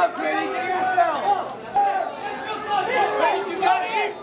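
Indistinct speech: several voices talking over one another in a busy room.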